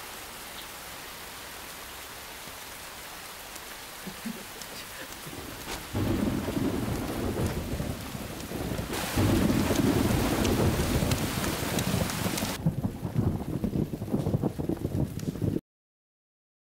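Steady rain that grows heavier about six seconds in, with a low rumble of thunder, and louder again about three seconds later. The sound cuts off suddenly just before the end.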